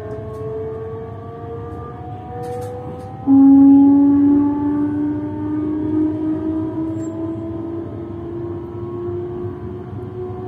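An electric train's traction motors whine in several steady tones, all rising slowly in pitch as the train accelerates. About three seconds in, a louder, lower tone cuts in suddenly and then climbs with the rest.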